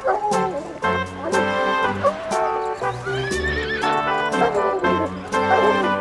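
Background music with a steady beat, over which a horse whinnies about three seconds in, its call rising and then falling.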